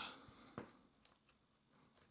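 Near silence, with one faint click about half a second in as fingernails pry at the edge of a smartphone's plastic snap-on back cover.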